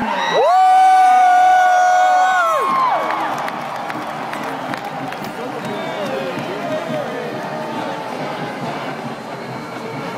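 Marching band brass holding one loud chord for about two and a half seconds, swooping up into it and falling off at the end. After it, a stadium crowd cheers and the noise carries on.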